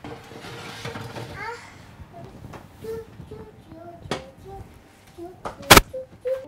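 A metal baking tray slid onto an oven rack, scraping for about a second and a half, then an oven door shut with a single loud clunk near the end.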